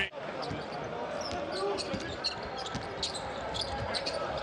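Arena sound of a live basketball game: a steady crowd murmur with scattered short, high-pitched squeaks and knocks from play on the court.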